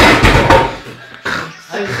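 A loud thump and scuffle lasting about half a second, then a shorter, softer one about a second later.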